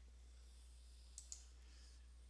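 Near silence: room tone, with two quick, faint clicks close together just over a second in.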